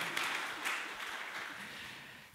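Audience applause dying away, fading steadily to almost nothing.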